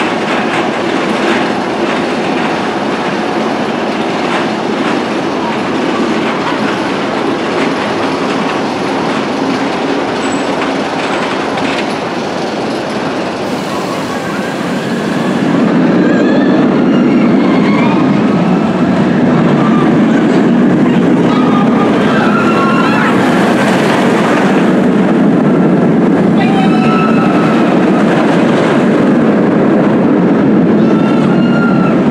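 Steel inverted roller coaster train running along its track, a loud rumbling rush that grows louder and heavier about halfway through, with short high-pitched squeals over it.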